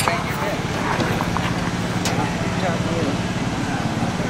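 An engine running steadily with a low, evenly pulsing hum, under background voices.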